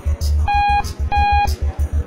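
Lift overload alarm beeping twice, each a short, steady electronic tone of about a third of a second, over background music with a pulsing bass beat.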